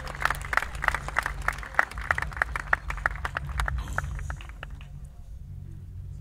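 Audience clapping at the end of a song, the individual claps distinct, thinning out and dying away about four to five seconds in, over a low wind rumble on the microphone.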